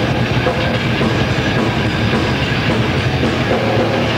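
Thrash metal band playing loud, with distorted electric guitars over fast, dense drumming in one unbroken wall of sound.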